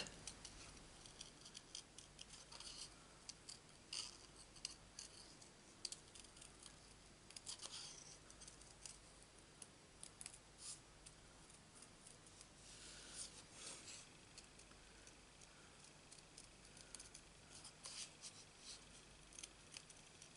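Small scissors snipping by hand through stamped card, a faint, irregular run of short snips with brief pauses between cuts.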